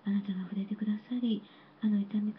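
Speech only: a woman praying aloud into a microphone in short, even-pitched phrases, with a brief pause near the end.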